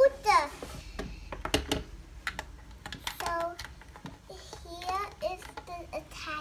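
Light plastic clicks and taps from a Barbie doll being handled and fitted onto a plastic toy scooter, most of them about one to two seconds in. A child's voice is heard briefly a few times.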